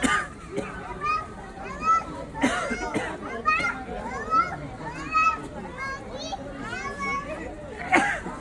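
Children's voices: chattering, calling and shouting while they play, in short high bursts with a few louder shouts.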